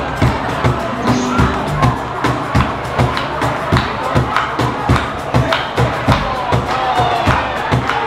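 Drums keeping a steady beat alone, about three strokes a second, over crowd noise.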